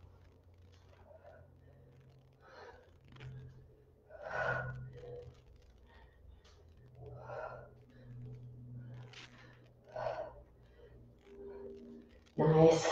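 A woman's faint, forceful breaths, a puff every second or two, from the exertion of repeated dumbbell squat-to-shoulder-press reps.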